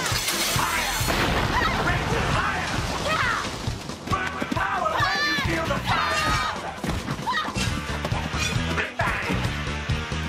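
Action soundtrack music under fight sound effects: punches and crashes, with a sharp hit right at the start, and shouting voices about halfway through.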